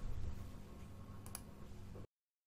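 A single computer mouse click, a quick press-and-release double tick, a little over a second in, over faint low room noise.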